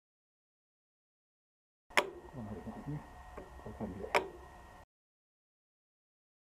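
Two sharp metallic clicks about two seconds apart, with faint handling noise between, as the hinged looper cover of a Kansai Special NFS6604 sewing machine is opened and a hex key is set to the looper thread guide.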